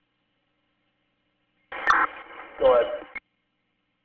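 Police dispatch radio: after silence, a transmission keys up about 1.7 s in with a sharp click and a hiss of static, carries a brief unclear voice fragment, and cuts off abruptly about three seconds in.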